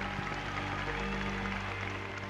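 Music with soft, long held notes, steady in level.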